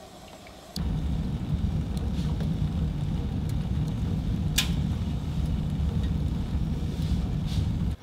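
Wood fire burning in a stove's firebox: a steady low rumble that starts suddenly about a second in, with one sharp crackle about halfway through.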